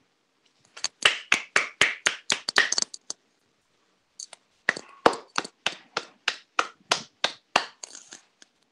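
Scattered applause, each hand clap heard separately: a quick run of claps for about two seconds, a pause of about a second, then slower, evenly spaced claps about three a second.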